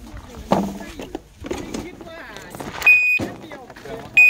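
A single electronic beep about three seconds in: one high, steady tone lasting about a third of a second, starting and stopping abruptly.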